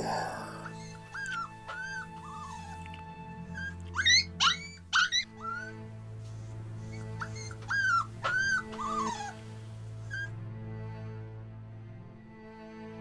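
A dog whimpering: a string of short, high whines and yelps, several rising sharply around the middle, stopping about ten seconds in, over a steady low music drone.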